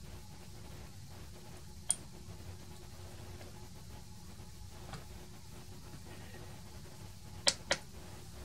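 Small plastic clicks from handling a transistor tester's locking component socket and test button: one click about two seconds in, then a sharp pair near the end just as the tester starts its test. A low steady hum sits underneath.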